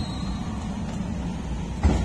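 Steady low outdoor rumble, with one dull thump near the end.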